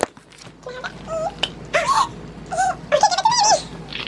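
A run of about five short, high-pitched whimpering cries, each rising and falling in pitch.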